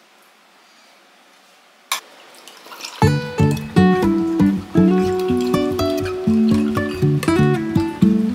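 Acoustic guitar music starts about three seconds in and carries on loudly with plucked notes. Just before it come a sharp clink and a brief trickle of Yakult being poured over ice cubes in a glass.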